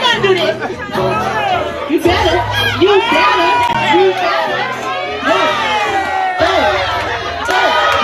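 A crowd, with many high voices, shouting and cheering on a dancer, over music with a heavy repeating bass line.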